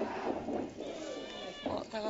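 Wrestling crowd noise in the arena with a drawn-out, high-pitched shout about halfway through.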